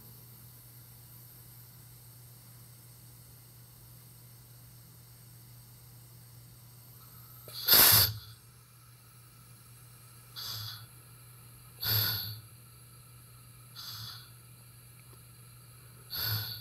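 Pneumatic control valve's positioner venting air in short hissing bursts as the valve is stepped through a signature test. A low hum runs alone for about seven seconds, then comes one loud burst and three fainter ones about two seconds apart.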